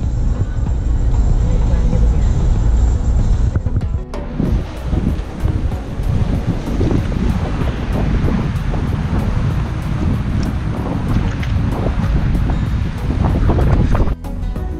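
Low, steady road rumble of a car driving, heard from inside the car; about four seconds in it changes abruptly to gusty wind buffeting the microphone over surf washing onto a rocky lava shoreline.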